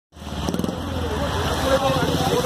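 A vehicle engine running steadily, with voices over it.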